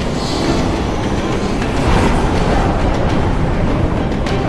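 Steady, dense rumbling whoosh of a fantasy sound effect for a vortex of dark energy, swelling slightly about halfway through.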